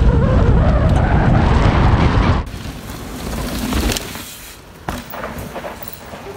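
Mountain bike descending a dirt forest trail at speed: a loud rush of wind on the camera microphone with tyres rolling and rattling over the dirt. About two and a half seconds in it cuts off suddenly to much quieter outdoor sound with a few faint knocks.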